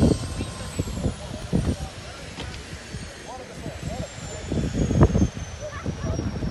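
Airliner jet engines winding down: a faint high whine slowly falling in pitch, under wind buffeting the microphone and scattered voices of people on the apron.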